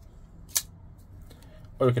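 SITIVIEN ST-143 folding knife flipped open: a single sharp snap, about half a second in, as the D2 blade swings out on its caged ball-bearing pivot and the liner lock engages.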